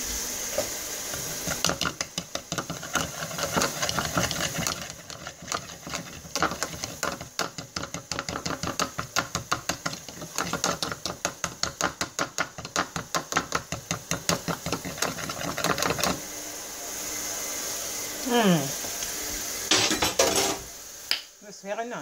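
A utensil whisking oil-and-vinegar dressing in a small plastic bowl, a long run of quick, even clicks against the sides that stops about three-quarters of the way through. Near the end come a short falling voice-like sound and a few knocks.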